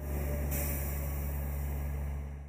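Steady low mechanical hum, like heavy machinery or an idling engine, with a faint hiss above it.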